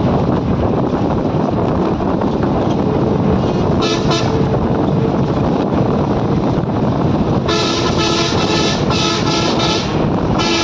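Steady running noise of a moving train heard from on board. A short horn toot comes about four seconds in, and from about seven and a half seconds in a chord-like horn sounds in long blasts with brief breaks.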